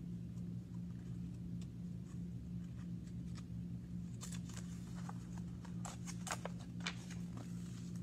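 Paper page of a picture book being handled and turned, a cluster of short crisp rustles and clicks from about halfway through, over a steady low hum.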